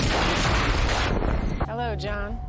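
An explosion: a sudden loud blast of noise that dies away over about a second and a half, followed near the end by a voice.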